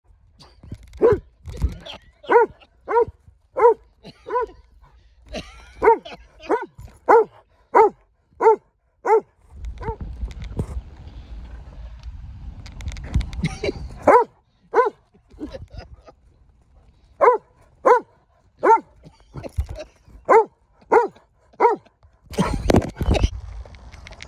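Weimaraner barking in runs of short, sharp barks, about two a second, with pauses between the runs. A low rumbling noise fills the longest pause and comes up again near the end.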